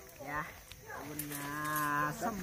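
A cow mooing: one long, steady call of about a second that starts about a second in.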